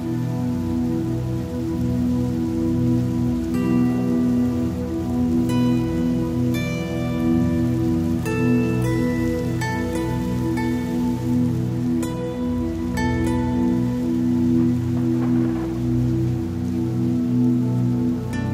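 Slow new-age meditation music: a held low drone with soft ringing notes struck every second or two, over a steady sound of falling rain.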